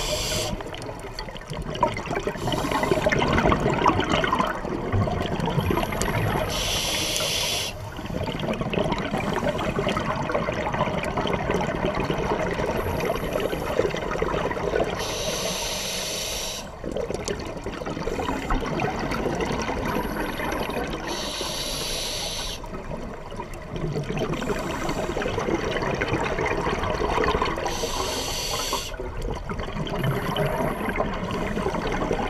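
A scuba diver's regulator breathing underwater: four short hissing inhalations about six to seven seconds apart, with long stretches of exhaled bubbles gurgling between them.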